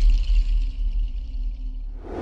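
Cinematic sound design under an animated logo: a deep bass rumble held and slowly fading, with a thin high shimmer above it that dies away near the end.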